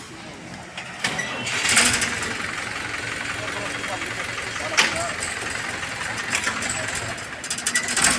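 Mahindra 265 DI tractor's three-cylinder diesel engine being turned over by the starter motor for about seven seconds without catching, then the cranking stops.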